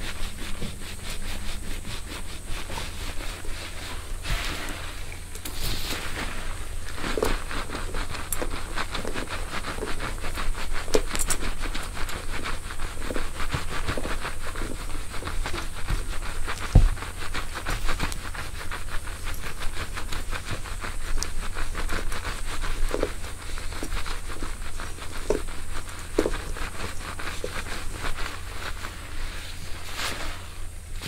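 Fingers and a wire scalp massager rubbing through a mannequin's wig hair close to the microphone: a continuous dense crackling and rustling, with an occasional louder knock.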